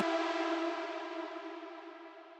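Reverb tail of a hardstyle synth lead chord: a held stack of tones fading slowly away. Right at the start it follows the end of a downward tapestop pitch glide.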